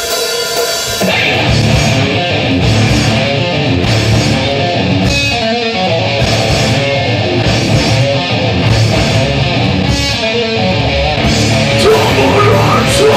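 Live heavy metal band playing the opening of a song without vocals: electric guitars, bass guitar and drum kit, loud and dense throughout.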